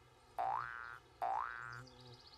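Two identical cartoon sound effects, each a quick upward-gliding boing-like tone, the second following the first by under a second.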